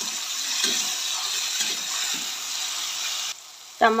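Chopped tomatoes, onion and garlic frying in hot mustard oil in a steel kadai, a steady wet sizzle as a spatula stirs them. The sizzle cuts off abruptly near the end.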